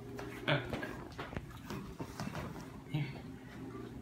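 A few light knocks and clicks over a steady low hum, with a brief exclamation of "oh" about half a second in.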